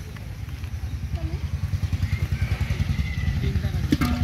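Low engine-like rumble made of fast, even pulses, growing louder toward the end: a small motor running.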